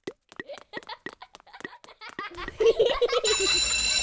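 Cartoon logo sound effects: a quick run of light pops and taps as the animated letters hop into place, a brief voice-like sound, then a bright sustained bell-like chime that rings on to the end.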